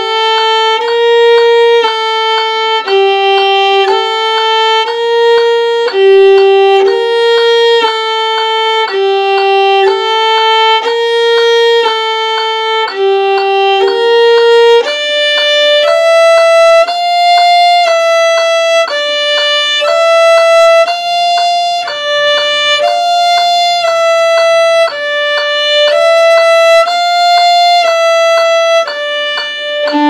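Solo bowed violin playing a minor-thirds exercise with string crossings, even held notes about one a second. The notes move higher about halfway through.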